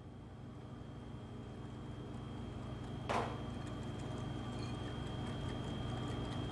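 Wire whisk stirring melted chocolate and butter in a ceramic bowl, with faint irregular ticks over a steady low hum; one sharper clink about three seconds in.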